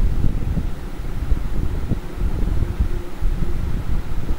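Low, uneven rumbling noise on the microphone, like wind or moving air buffeting it.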